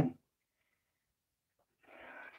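A man's voice trails off on a single word at the start, then near silence; a faint, short sound of unclear source comes in near the end.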